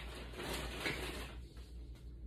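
Rustling and handling noise as packaged items are rummaged through and a plastic water bottle is picked up, dying down about a second and a half in.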